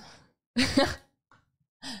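A woman's short, breathy laugh about half a second in, with another laugh starting near the end.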